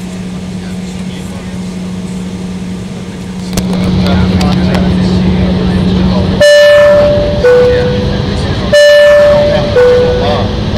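Jet airliner cabin noise from an Embraer E-170 taxiing, a steady hum that grows louder about three and a half seconds in. Then a loud two-tone high-low chime sounds twice, the first pair beginning a little past the middle and the second near the end.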